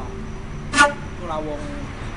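A single short, sharp car-horn beep just under a second in, louder than the talking around it.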